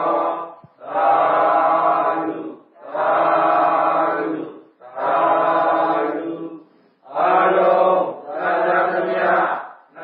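Buddhist devotional chanting: a voice recites in long held phrases on steady pitches, five phrases in a row with brief breaths between them.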